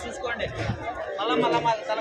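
Men talking over one another, several voices in overlapping chatter.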